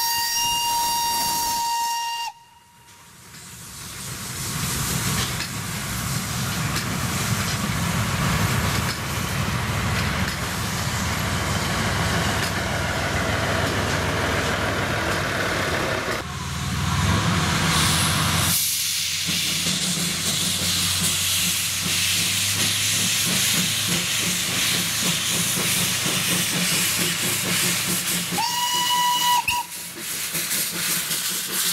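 Steam locomotive whistle sounding a steady blast that cuts off about two seconds in. Then a steam train running with hissing steam. Another short whistle blast, rising into its note, comes near the end.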